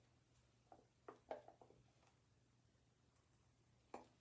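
Near silence: room tone, with a few faint short handling sounds about a second in and a brief tap near the end as a toothbrush and toothpaste tube are handled.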